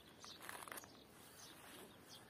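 Near silence: faint outdoor ambience, with faint bird calls in the first second.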